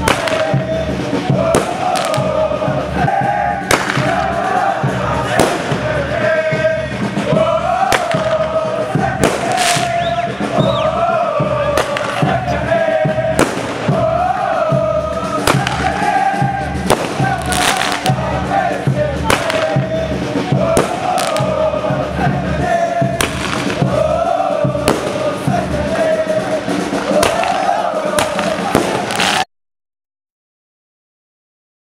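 A crowd of football ultras chanting together while firecrackers go off with frequent sharp bangs, and the sound cuts off abruptly near the end.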